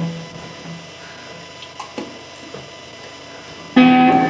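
Electric guitar: a held low note rings out and fades, a few faint picked notes follow, then a loud chord strikes just before the end.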